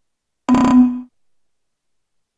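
A single short sound effect, about half a second long, that starts suddenly and holds a steady low tone before cutting off.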